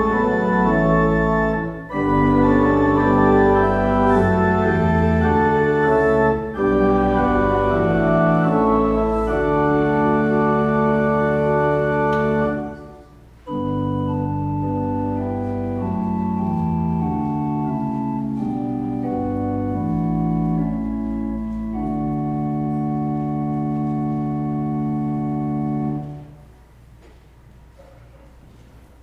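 Church organ playing slow, sustained chords. The phrase ends about halfway through with a short break, then the organ starts a second passage of held chords, the introduction to the communion distribution hymn, which stops shortly before the end.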